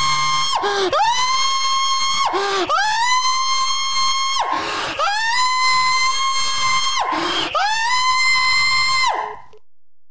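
A man screaming as loud as he can into a phone during a prank call: five long, high-pitched held screams, each rising quickly and then held for a second or two, with short breaks for breath. The screaming stops shortly before the end.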